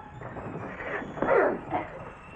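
Two short, falling cries from people fighting hand to hand: yells of effort or pain. A louder one comes a little past halfway and a fainter one just after it.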